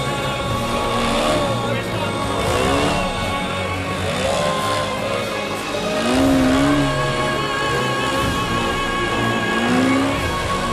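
A radio-controlled aerobatic model airplane's engine revving up and down as it manoeuvres, heard together with added music.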